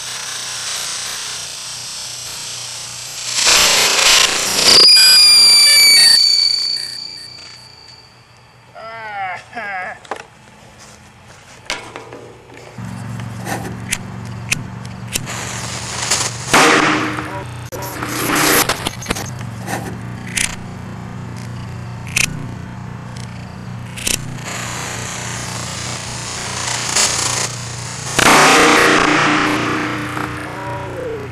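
Small novelty ground fireworks going off: a loud hissing spray with a whistle about four seconds in, then a long run of crackling and sharp pops, with louder bursts of hissing spray twice in the middle and again near the end.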